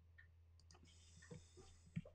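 Near silence: room tone with a low steady hum and a few faint clicks, the loudest near the end, with a faint high whine in the second half.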